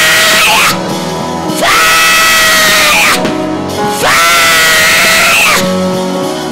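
A woman screaming into a microphone, amplified: a string of long, loud, wordless cries, each held for about a second and a half, rising in pitch at the start and falling away at the end. Worship music with guitar plays underneath.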